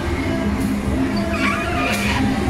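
Music with held notes, and a short wavering high squeal about a second and a half in.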